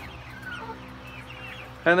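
Young hens giving faint, short chirps and trills as they settle on their roosts for the night, over a low steady hum.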